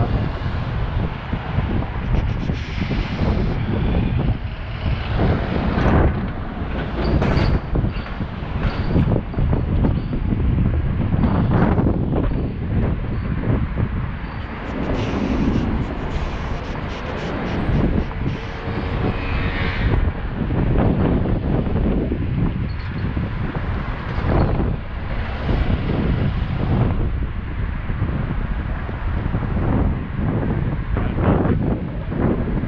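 Wind buffeting the microphone of a moving camera, over the steady noise of city street traffic with cars and buses passing.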